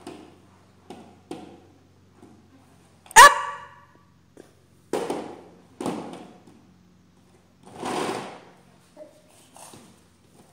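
A toddler's short vocal sounds: one loud, sharp squeal about three seconds in, then several breathy grunts as he strains to lift a light plastic toy barbell, with a few soft knocks of the barbell on the plywood platform.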